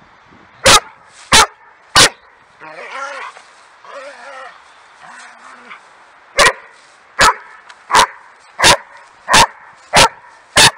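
Dog barking at a stick it is playing with. There are three sharp barks in the first two seconds, then after a quieter stretch a steady run of six barks about 0.7 s apart.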